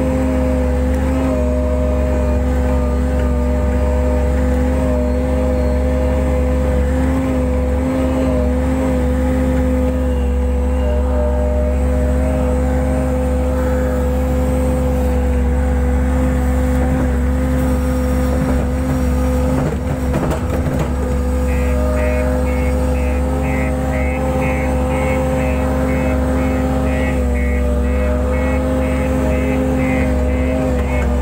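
JCB 135 skid steer loader's diesel engine running steadily, heard from inside the cab. About two-thirds of the way in, a rapid high beeping starts and keeps repeating.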